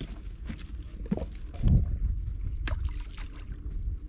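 Steady low rumble of wind and water around a small fishing boat at sea, with scattered light clicks from handling gear and a louder dull thump a little before halfway.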